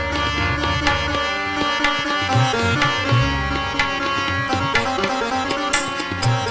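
Instrumental passage of Indian devotional music: an electronic keyboard plays a melody over tabla and dholak drumming, with deep drum strokes in a steady rhythm.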